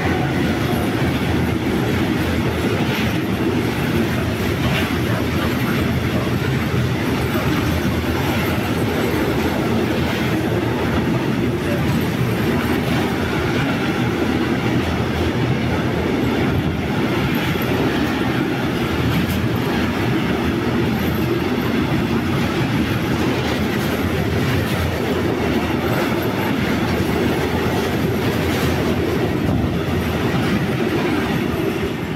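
Intermodal container freight train wagons rolling past at speed: a loud, steady rumble of steel wheels on the rails, with clicks over the rail joints and a faint high wheel squeal.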